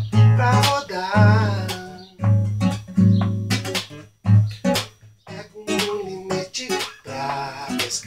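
Classical acoustic guitar playing short chord strokes over a low bass note in an uneven, jazzy rhythm. A man's singing voice runs over it for the first two seconds or so.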